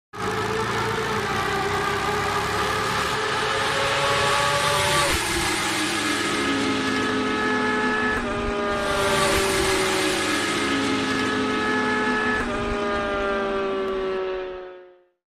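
Motor engine sound effect, a motorcycle running at high revs over a hiss. Its pitch slowly sags and jumps back up three times, like gear changes.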